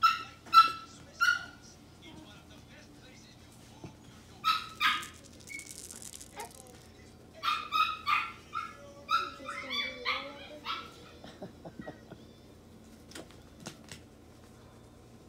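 Chihuahua puppies yipping and barking in play: short, high-pitched yips, three close together at the start, two more about four and a half seconds in, then a rapid string of them from about seven and a half to eleven seconds.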